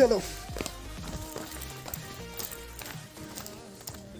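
Music with steady held notes, and a short falling vocal sound right at the start.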